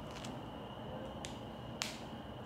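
A few faint, sharp clicks and ticks from fingers handling a small wrapped tea sachet, the loudest shortly before the end, over a faint steady high whine.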